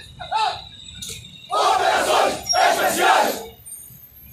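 A single voice calls out, then a squad of BOPE police trainees shouts two loud unison war cries, each about a second long.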